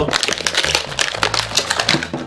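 Stiff clear plastic blister packaging of an amiibo figure crackling and crinkling as it is torn open by hand: a dense run of sharp crackles.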